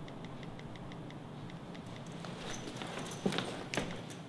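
Smartphone keyboard typing clicks: a quick, even run of light ticks, then a flurry of louder, sharper taps near the end.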